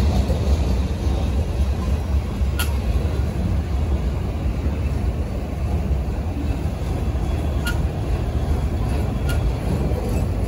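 Slow-moving freight train of flatcars and autorack cars rolling past close by: a steady low rumble of steel wheels on the rails, broken by three sharp metallic clicks.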